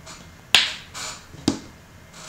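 Two sharp clicks about a second apart, the first the louder, from a face-cleanser container being handled just after cleanser has been dispensed.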